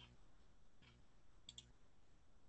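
Near silence, with two faint computer-mouse clicks in quick succession about one and a half seconds in.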